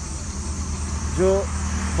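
Steady low rumble with an even, high insect-like chirring behind it; a man says a single short word a little past the middle.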